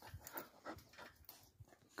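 Near silence, with a few faint, short breathy sounds from a dog up close at a wire fence.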